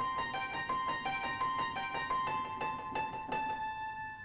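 Acoustic piano recording played back through a Radial Space Heater's tube drive, engaged at 140-volt plate voltage with the drive at about 12 o'clock, adding tube saturation. A quick run of high notes, about three a second, ends on a note that rings on and fades.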